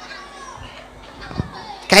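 Faint children's voices and background murmur in a large hall, with a soft knock about one and a half seconds in. Near the end a man's voice starts loud through a microphone and loudspeakers.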